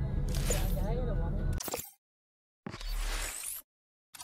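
Car cabin driving rumble with a brief voice in it, cutting off suddenly under two seconds in. After a short silence comes a sound of about a second for the dash-cam maker's logo.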